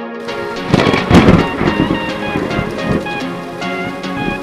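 A thunderclap sound effect with rain, loudest about a second in and fading away over the next two seconds, laid over electronic intro music that plays throughout.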